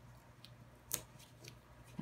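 Faint handling sounds of cardboard and tape being pressed onto paper, with one short sharp tick about a second in.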